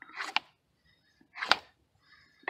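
Wooden board rolling a roll of harakeke (New Zealand flax) fibre and wood ash against a flat stone: two short scraping strokes about a second apart, each ending in a sharp click. This is the roll being compacted down, the opening stage of a Rudiger roll friction fire.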